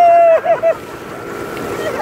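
A rider's long, held shout on one steady pitch, breaking off about half a second in with a couple of short yelps. Then the steady rush of wind and water noise from the speeding banana boat.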